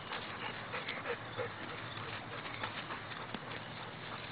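A dog in dry tall grass: rustling with scattered short clicks, and two brief faint squeaky sounds about a second in.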